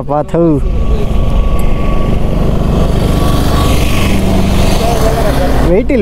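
Wind rushing over the microphone with a motorcycle engine running underneath as the bike rides along, a steady rumble heaviest in the low end.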